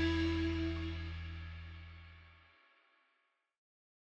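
Electric guitar and bass guitar, played through XVIVE wireless systems, letting a last chord ring out with a sustained low bass note. The sound fades away to silence about two and a half seconds in.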